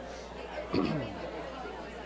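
Audience talking in pairs and small groups: overlapping chatter of many voices filling the room. About three-quarters of a second in, one nearby voice rises briefly above the rest, its pitch falling.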